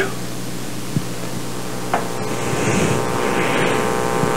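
A pause between spoken phrases, filled with the steady hum and hiss of a low-quality recording, with a faint click about a second in.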